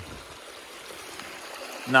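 Water rushing steadily from the outlets of several four-inch pipes laid through a beaver dam, pouring down a shallow channel. The pipes carry the pond's outflow past the dam to hold the water level down.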